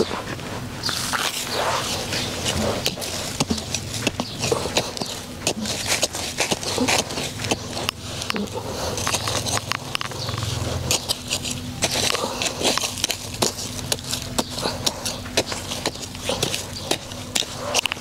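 Small metal-bladed hand hoe chopping into and scraping through dry, crumbly soil in a quick run of short strikes, loosening the earth for planting.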